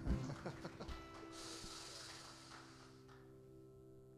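A held keyboard chord lingering and slowly fading, with a few soft knocks in the first second and a brief high hiss about a second in.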